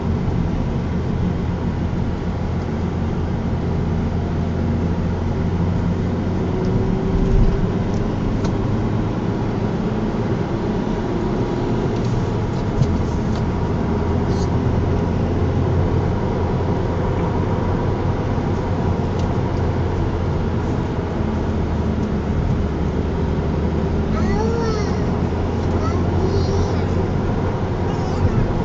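A car driving steadily along a road, heard from inside: an even, low engine and tyre drone with no sharp changes.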